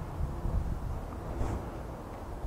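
Wind buffeting the microphone: a low, uneven rumble.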